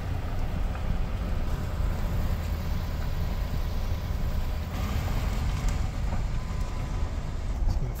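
Steady low engine and road rumble inside the cab of a Class C motorhome driving slowly over gravel.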